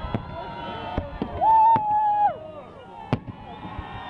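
Fireworks display with aerial shells bursting in sharp bangs, several in four seconds, over a background of held voices. The loudest sound is one drawn-out vocal note lasting about a second, beginning about a second and a half in.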